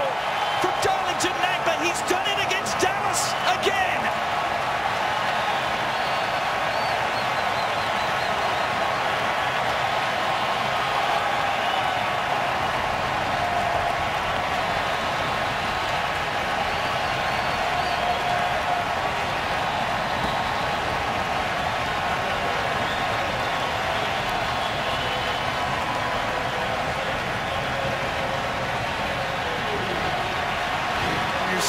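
Home stadium crowd cheering and singing after a goal: a steady wash of many voices with faint wavering sung pitches. A run of sharp claps or cracks stands out in the first few seconds.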